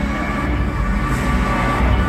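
Music playing over a hockey arena's sound system, with a steady low rumble beneath it.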